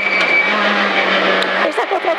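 Peugeot 106 F2000 rally car's engine running hard with a steady note, heard from inside the cabin along with road noise.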